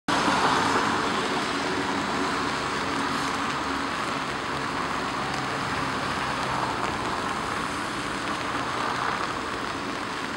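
Steady hiss of rain falling on umbrellas and wet pavement.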